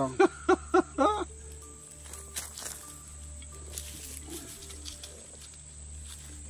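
A man laughing in a few short bursts, then a quieter stretch of soft background music with held notes over a low steady hum.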